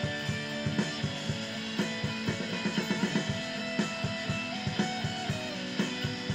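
Stratocaster-style electric guitar playing an instrumental passage over a steady drum beat, with one long held note around the middle.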